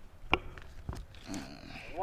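A pause in the talk with two light clicks, then a short, low, wavering voiced sound from a man, like a brief growl or hum.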